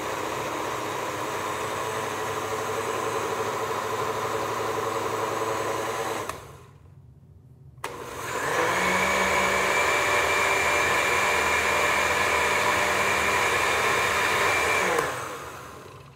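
Countertop blender with a glass jar running, liquefying dandelion greens in water. It runs steadily for about six seconds, stops, then starts again about two seconds later at a higher pitch and runs for about seven seconds before winding down near the end.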